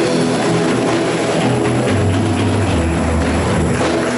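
A live worship band with drum kit, electric guitars and bass holding a loud closing chord under a wash of cymbals. A deep bass note swells in about halfway through.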